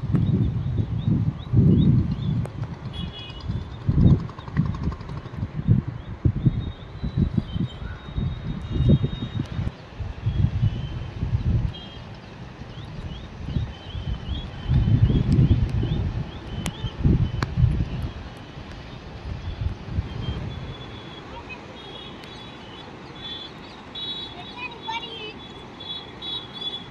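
Gusts of wind buffeting the phone's microphone in uneven low rumbles, easing after about twenty seconds. Small birds chirp high and thin in the background, more often near the end.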